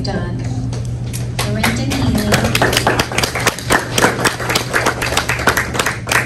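A small group of people clapping, the separate hand claps easy to pick out, starting about a second in and running on to the end, with a few voices over the top.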